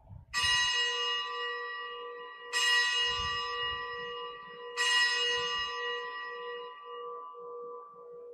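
A bell struck three times, about two seconds apart, each strike ringing on and slowly fading. It is the bell rung at the elevation of the chalice, just after the consecration at Mass.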